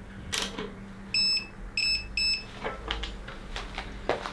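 Three short electronic beeps, starting about a second in, with small clicks and taps of parts being handled before and after them.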